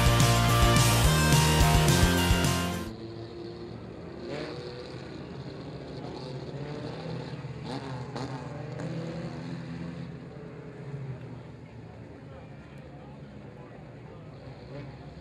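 Rock music with guitar that cuts off about three seconds in, followed by the engines of mini stock race cars running steadily as a pack laps a dirt oval, with a few rises and falls in pitch.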